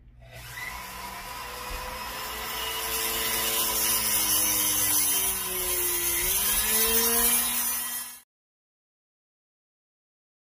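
High-speed flex-shaft rotary tool with an abrasive wheel grinding through the hardened steel rear hook of an AR-15 hammer, a steady whine over hiss. The pitch sags and recovers as the wheel is pressed into the metal. It cuts off abruptly about eight seconds in.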